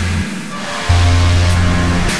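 Shoegaze-style electronic rock track playing: a dense, noisy wash of sustained tones over a deep bass note that drops out briefly and comes back just before a second in.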